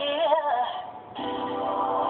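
A recorded song playing: a woman's sung note slides down and wavers, ending about half a second in. After a brief dip, sustained backing chords come in just after one second.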